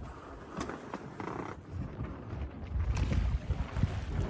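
Quiet sounds of a sailing yacht rocking in a calm swell: a low rumble with a few faint knocks and creaks from the boat.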